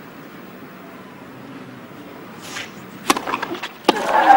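A quiet stadium hush, then a tennis serve: the racket strikes the ball sharply about three seconds in, and a second sharp hit follows just before the end as the ball is returned.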